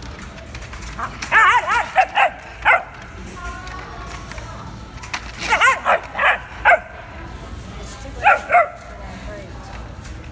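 Puppies yipping and barking in short, high-pitched bursts as they play-fight: a run of several quick yips about a second in, another run around the middle, and two more near the end.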